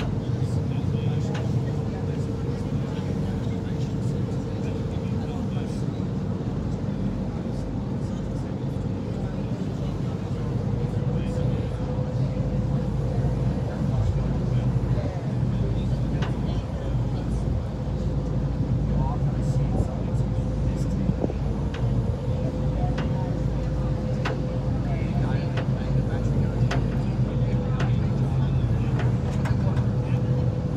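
A boat's engine running steadily under way, a constant low drone with a steady hum above it, heard from on board.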